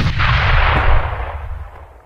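A loud explosion sound effect, a deep boom and rumble that dies away over about two seconds.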